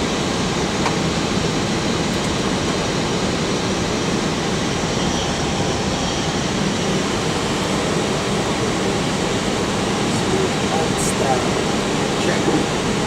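Steady airliner flight-deck noise in flight: an even rush of airflow and air-conditioning over the engines' hum, unchanging throughout.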